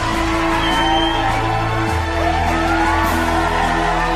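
Music from a live stage show: held bass notes and chords, with the bass changing about halfway through, and audience whoops and cheers over it.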